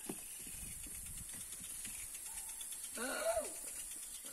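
Faint irregular soft thuds and rustles of bare feet running on a grass lawn, with a faint steady high hiss, and a short shout about three seconds in.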